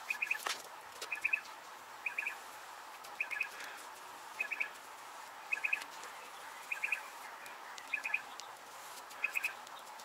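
A bird calling over and over: short bursts of three or four quick, high chirps, repeating evenly about once a second.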